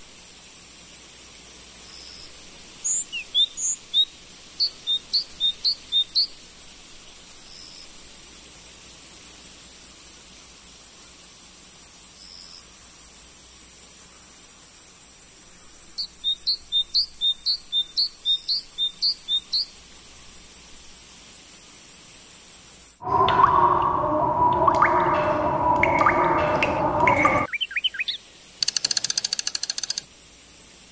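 Countryside ambience: a constant high, pulsing insect chirr with a bird chirping in two quick runs of short notes. About three quarters of the way through, a loud, buzzy sound with several pitches cuts in for about four seconds and stops abruptly.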